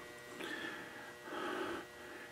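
Two soft, faint breaths from a man pausing between phrases, one about half a second in and a longer one around a second and a half in.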